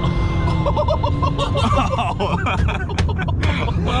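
Engine and road rumble inside a small Chevrolet car's cabin as it drives hard, with a steady high whine that stops about a second or two in, over laughter and voices.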